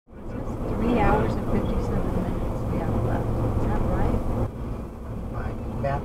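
Steady road and engine rumble inside a moving car's cabin, with indistinct voices talking over it.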